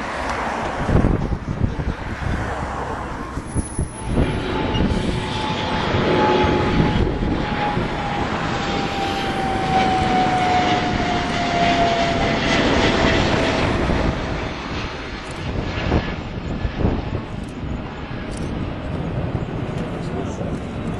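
Jet airliner's engines on landing approach: a steady loud rumble with a single whine that slides slowly down in pitch as the plane passes.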